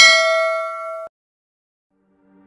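Bell 'ding' sound effect of a subscribe-button notification bell: one bright ring of several steady tones that fades and cuts off abruptly about a second in.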